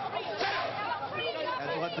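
Several people talking and calling out at once, their voices overlapping, with one voice starting to speak more clearly near the end.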